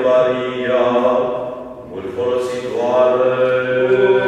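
Eastern Orthodox liturgical chanting of a Romanian akathist hymn: a sustained, drawn-out sung vocal line. It breaks briefly about halfway through, then resumes.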